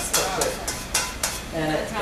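Spaetzle dough being scraped through the holes of a stainless-steel colander: several short scraping strokes against the metal in quick succession.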